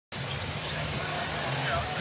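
Arena crowd ambience: a steady haze of many people talking at once in a large hall.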